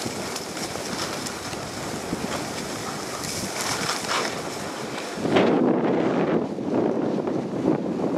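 Snowblades sliding and scraping over groomed snow, with wind rushing on the microphone. About five seconds in, the rush grows louder and lower as the high scraping hiss drops away.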